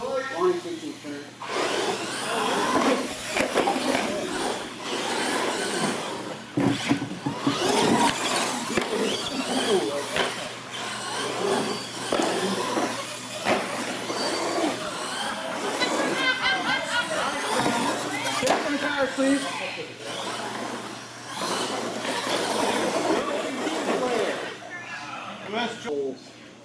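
Radio-controlled monster trucks racing on a concrete floor, their motors whining as they accelerate and run the track, mixed with voices of people talking around them.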